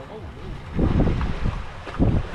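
Wind buffeting the microphone in loud, ragged gusts starting about a second in, with faint voices in the background.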